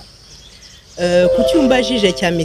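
A short pause with faint background hiss, then a woman's voice starts about a second in, with some notes drawn out.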